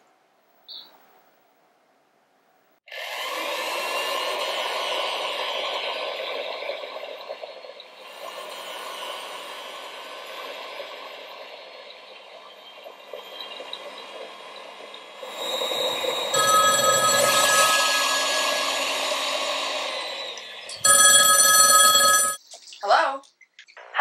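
Vintage Dormeyer electric stand mixer running steadily for about twelve seconds, its sound changing partway through. Near the end a telephone rings once, about a second long.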